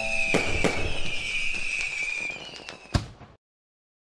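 Fireworks: several sharp bangs over crackling, with a high whistle that falls slowly in pitch, a last loud bang about three seconds in, then a sudden cut-off.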